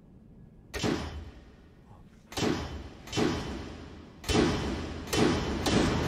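Cinematic sound effects: a run of six heavy, echoing metallic slams, coming closer together and louder, with a low rumble building near the end.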